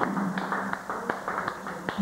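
Scattered sharp taps and clicks between songs, over a faint low hum, then a chord on the acoustic guitar is strummed right at the end.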